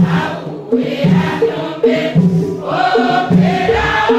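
Church choir, mostly women's voices, singing a Tiv worship hymn together, with a low pulse about once a second under the voices.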